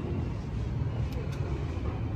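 Steady low rumble of road vehicles, with a faint click or two about a second in.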